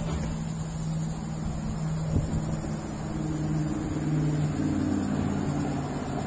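An engine running steadily, a low even tone with a fainter higher one, over outdoor noise, with one short click about two seconds in.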